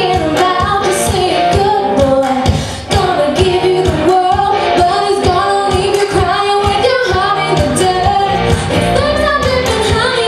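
A woman singing a country-pop song live into a handheld microphone, over backing music with a steady beat. The music drops away briefly about three seconds in.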